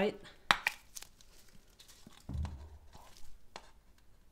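A plastic squeeze bottle of acrylic paint being opened and squeezed: a sharp click about half a second in as the flip-top cap is worked, then faint crackling handling and a dull low thump about two seconds in as paint is squeezed out.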